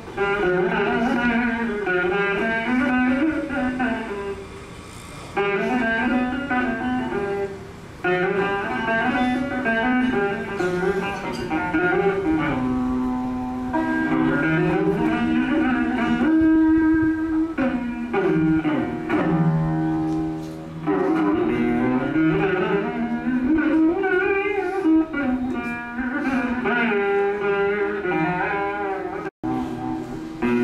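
Saraswati veena played solo in raga Shanmukhapriya. Its plucked notes bend and glide between pitches in ornamented phrases, with short pauses between some of them.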